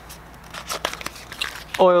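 Product packaging being handled, giving a few short, light crinkles and crackles.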